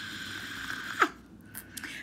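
A short vocal yelp that falls sharply in pitch about a second in, amplified through a handheld karaoke microphone's built-in speaker. Before it there is a faint steady high tone from the microphone's speaker, which stops at the yelp.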